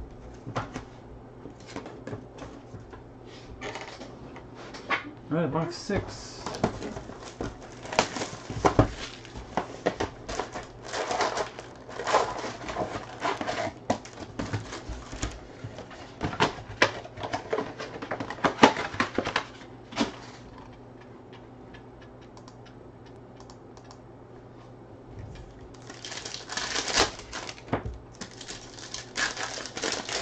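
Hands opening a Panini Contenders football card box on a table: a run of clicks and knocks of cardboard and card packs being handled, a few quieter seconds, then foil pack wrappers crinkling near the end.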